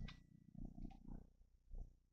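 Near silence: room tone with faint, uneven low rumbling and a couple of soft clicks.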